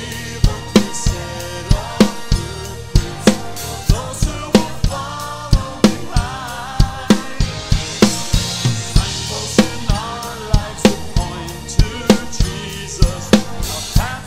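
Acoustic drum kit (Pearl shells, Diril cymbals) played to a steady beat, with kick, snare and cymbals strongly hit about twice a second. The original song recording plays underneath.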